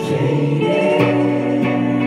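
Live rock band playing with a woman singing; from about a second in, the band settles onto a long held chord.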